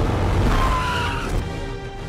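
Dramatic film score over a car chase, with heavy vehicle engine rumble and a short falling whine about half a second in. The sound is loudest at the start and eases toward the end.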